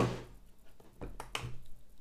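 A quadcopter being set down by hand on a plastic kitchen scale: a sharp knock at the start, then two light clicks a little over a second in.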